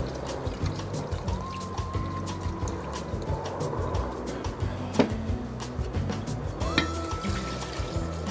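Background music over rum trickling from a glass bottle into a glass measuring cup, with one sharp click about halfway through.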